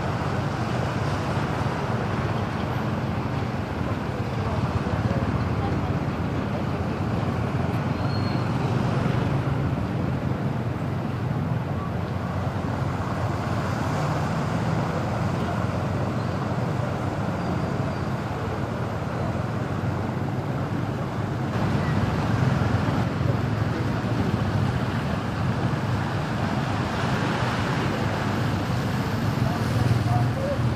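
Steady traffic noise: vehicle engines running and tyres moving through shallow floodwater on a street.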